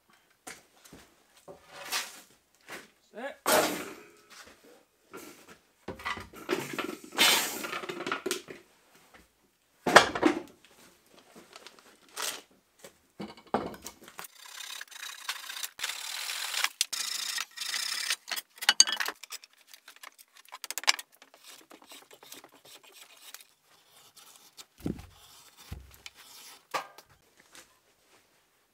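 Scattered knocks and clatter of tools and a bench vise on a wooden workbench, then a handsaw cutting through a wooden handle clamped in the vise for about five seconds, about halfway through. More scattered knocks follow.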